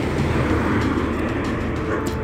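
A car passing close by: tyre and engine noise that swells in the first half second and then holds steady.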